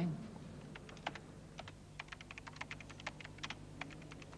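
Typing on a computer keyboard: a quick, irregular run of key clicks, several a second, starting just under a second in.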